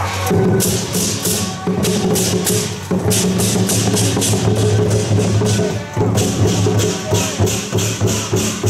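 Temple procession percussion: barrel drums and cymbals struck in a fast, even rhythm of about four strikes a second, over a sustained low pitched tone.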